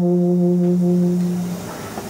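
Solo euphonium holding one long, steady low note that fades out about a second and a half in, the hall's reverberation trailing after it.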